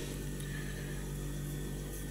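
Steady low background hum with faint hiss, even throughout and with no distinct events.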